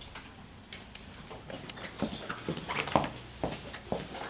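Small forks clicking and scraping on china plates while eating cake, a run of short, scattered clicks that come more often in the second half.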